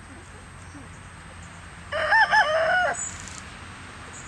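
A rooster crowing once, a loud call of about a second that rises, wavers twice and falls away at the end.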